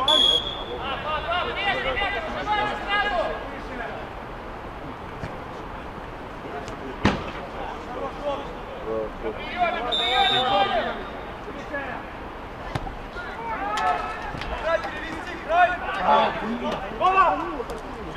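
Football referee's whistle blowing two short blasts, one at the very start and one about ten seconds in, over players shouting across the pitch. A single sharp thud of a ball being kicked comes about seven seconds in.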